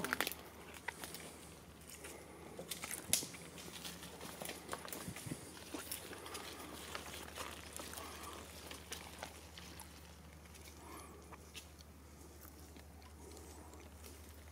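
Faint footsteps on damp leaf litter and twigs, with scattered small crackles and one sharper snap about three seconds in.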